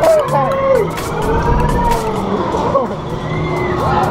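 Wind rushing and buffeting over the microphone as a swinging pendulum amusement ride sweeps through its arc, with riders whooping and yelling in gliding voices.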